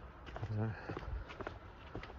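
Footsteps of a person walking: a few soft, irregularly spaced steps.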